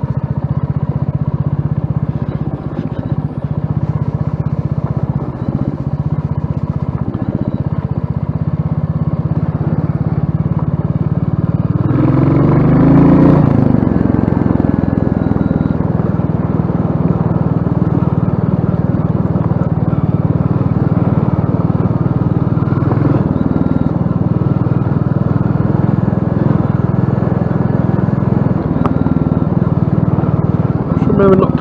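Royal Enfield single-cylinder motorcycle engine running steadily at low road speed. About twelve seconds in it revs up and pulls harder, the loudest moment, then settles back to a steady run.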